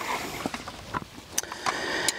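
Folding kayak cart being unfolded by hand: light handling rustle with a few sharp clicks from its frame joints and spring-button locks as the axle and wheels swing out, the last two clicks coming in the second half.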